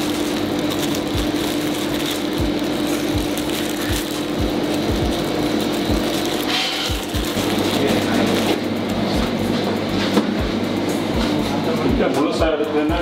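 Background music with a steady low beat about every 0.6 seconds and a held tone through the first half.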